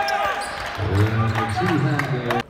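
Basketball bouncing on a hardwood court, a few short knocks, then a loud shouting voice from about a second in, with a sports hall's echo.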